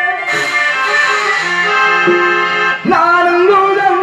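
Live Tamil nadagam stage music: a harmonium holds steady notes over drum accompaniment, and a singer's voice comes back in about three seconds in.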